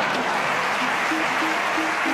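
A live audience applauding over music, which plays short, repeated low notes beneath the dense clapping.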